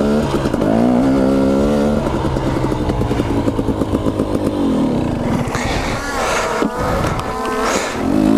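Two-stroke KTM dirt bike engine heard close up, revving up over the first couple of seconds, holding a steady pitch, then dropping off about five seconds in and picking up again near the end.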